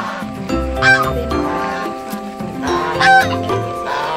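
Domestic geese honking: two loud honks, about a second in and about three seconds in, over steady background music.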